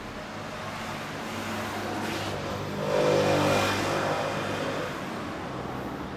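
A motor vehicle passing by on the road. Its engine and tyres swell to their loudest about three seconds in, then fade.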